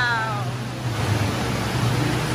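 Steady noisy din of a large indoor water park hall, a continuous wash with a low hum underneath.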